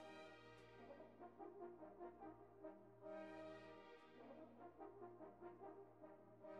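Near silence, with very faint background music of held notes.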